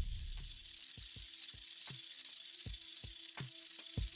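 Quiet electronic glitch music: a hiss over a steady hum, with short low thumps at about three a second.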